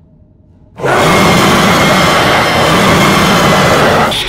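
Horror jump-scare sound effect: after a faint low hum, a sudden harsh, noisy blast hits about a second in. It holds very loud for about three seconds and then cuts off abruptly.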